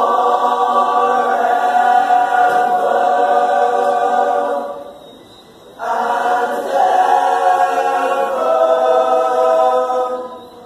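Male choir singing a cappella, holding long chords in two sustained phrases with a pause of about a second between them.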